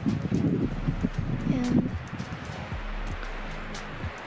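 Wind buffeting the camera microphone in gusts, with soft background music underneath.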